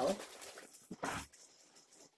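Large empty cardboard box being handled and shifted on a table: a rustle, then a short scrape or bump about a second in.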